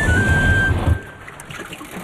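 Cartoon sound effect of a boat setting off: a rumbling motor and churning water, with a short high tune of a few descending notes over it. It cuts off about a second in, leaving a quieter background.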